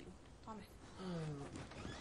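A person's voice: two short vocal sounds, the second drawn out with a falling pitch.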